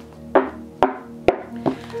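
Four sharp knocks about half a second apart: a tarot deck being tapped by hand. Soft background music plays underneath.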